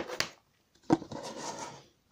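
Clear plastic packaging and its card backing being handled: a click about a second in, then a short rustle of plastic.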